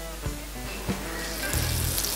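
Masala-coated fish sizzling as it goes into hot oil on a dosa tawa, the sizzle starting about one and a half seconds in. Background music with a steady beat plays underneath.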